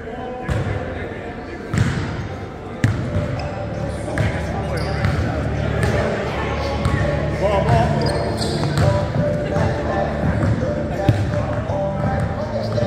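A basketball bouncing on a hardwood gym floor, several sharp bounces standing out, the clearest about two and three seconds in, with indistinct players' voices in the echoing hall.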